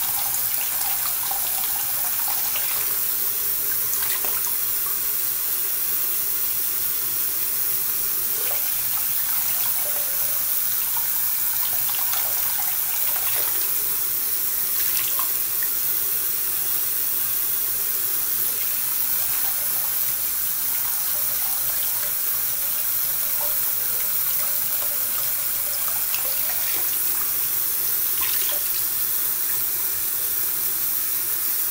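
Bathroom sink tap running steadily while a face is washed under it, with faint splashes now and then.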